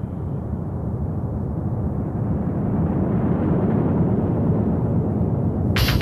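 Rocket liftoff roar: a dense low rumble that swells steadily louder. Near the end a sharp electronic beat cuts in over it.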